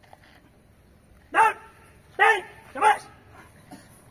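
A dog barking three times in quick succession, the first about a second and a half in and the other two within the next second and a half.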